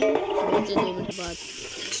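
Chopped tomatoes and green chillies sizzling in hot oil and spice masala in a steel pot, loudest in the first second and quieter after about a second.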